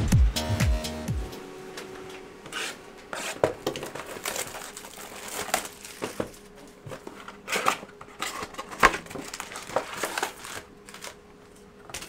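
Music ends about a second in. Then come irregular crinkling and crackling of trading-card pack wrappers as a box of 2021 Panini Select Hobby packs is handled and opened.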